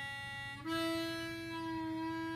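A single harmonica note held on hole two, stepping up in pitch about two-thirds of a second in and then held steady: a bent note.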